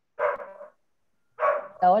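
A dog barking twice in the background of a participant's videoconference microphone, two short rough barks about a second apart.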